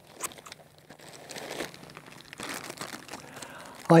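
Clear plastic zip-top bag crinkling and rustling in irregular patches as it is handled.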